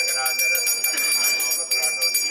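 Puja hand bell rung rapidly and continuously, its strokes repeating several times a second over a steady high ringing tone, with voices chanting underneath.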